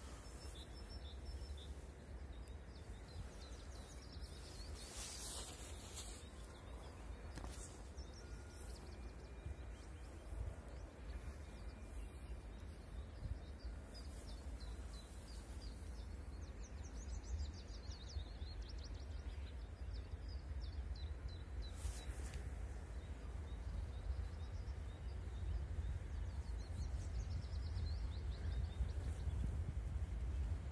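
Faint outdoor ambience of birds chirping over a low rumble that slowly grows louder as a distant M62 diesel locomotive approaches.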